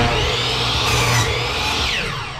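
Compound miter saw cutting through a wooden board: the blade starts suddenly at full speed with a steady high whine through the cut, and near the end it is let off and begins to wind down in a falling whine.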